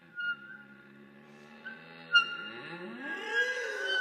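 Bass clarinet and flute playing slow contemporary chamber music: short, sharp high notes over low held tones. In the second half a low note slides steadily upward in pitch, with a whale-like sound.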